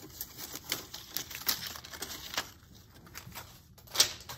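Construction-paper strips of a stapled paper windcatcher rustling and crackling as it is handled and set aside, in a run of irregular small crinkles.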